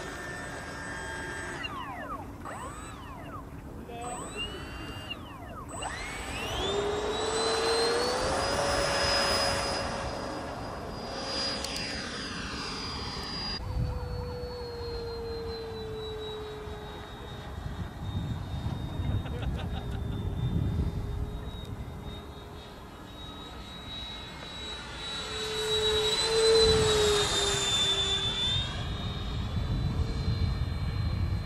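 Freewing F-4D Phantom RC jet's 90mm electric ducted fan whining as it spools up, rising in pitch about six seconds in for the takeoff. It then holds a steady high whine in flight, swelling and fading as the jet passes, loudest near the end.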